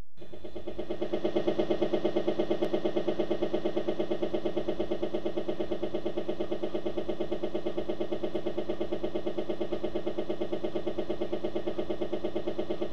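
Helicopter rotor and engine sound: a steady droning tone that pulses at about four beats a second. It cuts in suddenly just after the start.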